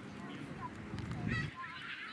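Young footballers shouting short calls to each other on the pitch, with a louder burst of several shouts about a second and a half in. A low rumble on the microphone runs underneath and cuts off suddenly at the same point.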